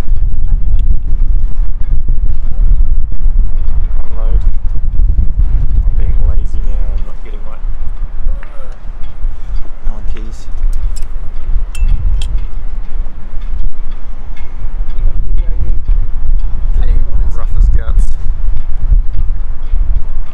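Heavy wind buffeting the microphone as a loud, continuous low rumble, with a few light clicks partway through.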